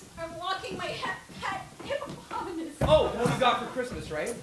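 Performers' voices on stage, speaking or vocalising in short phrases that are not clear words, with the loudest burst about three quarters of the way through.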